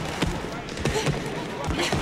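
A string of irregular dull thuds in a gym: boxing gloves hitting padded shields during sparring, with indistinct voices in the room.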